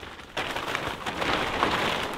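Large plastic tarp rustling and crinkling as it is spread and lifted by hand, getting louder about a third of a second in.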